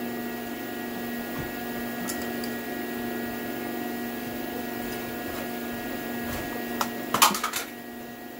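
Tongue-and-groove pliers gripping and working a broken exhaust manifold bolt stub in an aluminium LS cylinder head, with a few sharp metal clicks and clanks near the end, the loudest about seven seconds in. A steady hum with several fixed tones runs underneath throughout.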